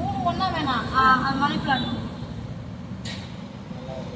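Voices talking in the background, mostly in the first two seconds, over a steady low rumble, with a short click about three seconds in.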